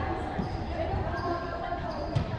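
Voices echoing in a large sports hall, with a single low thud about half a second in from a volleyball bounced on the court floor.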